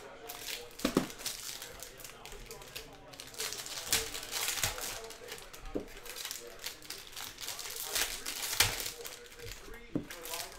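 Stacks of baseball trading cards being handled: card stock rustling and sliding, with irregular light taps as stacks are set down on the table, the sharpest near the end.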